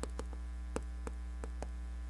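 Steady electrical mains hum under irregular light taps and scrapes of chalk writing on a chalkboard, a few strokes a second.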